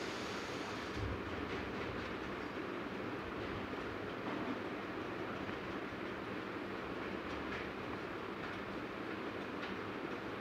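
Steady rumbling background noise of a hall, with no distinct events.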